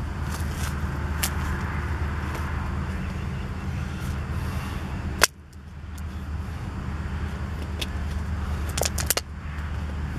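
Steady low background rumble, with a sharp click about five seconds in, after which the sound briefly drops away, and a quick run of clicks near the end.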